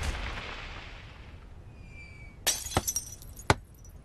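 Window glass shattering about two and a half seconds in, a cartoon sound effect, followed by a few sharp clinks of falling shards.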